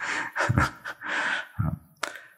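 A man's breathing close to a microphone between spoken phrases: an audible breath about a second in, with a few short, soft voice sounds around it.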